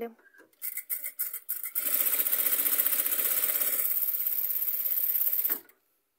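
A sewing machine stitching fast through tulle, running a long, large-stitch gathering seam. A few clicks come first, then about four seconds of steady, fast stitching that stops suddenly near the end.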